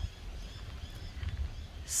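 Quiet outdoor background with a low rumble of wind on the microphone.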